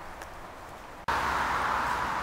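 Faint outdoor quiet, cut off abruptly about a second in by a steady hiss of traffic on a wet main road, the tyre noise of passing cars on the wet surface.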